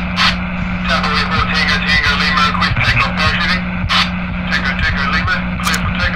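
Crackly radio-transmission noise: a steady low hum that drops out briefly now and then, under dense static with frequent clicks and garbled, unintelligible voice-like sounds.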